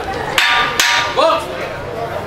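Boxing ring bell struck twice about half a second apart, each a sharp metallic clang with a brief ring, marking the end of the round.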